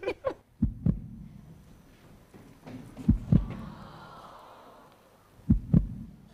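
Heartbeat sound effect: three deep double thumps, each pair about two and a half seconds after the last.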